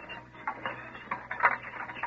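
A few short, irregular clicks and rustles from a radio-drama sound effect, over the steady low hum of an old broadcast recording.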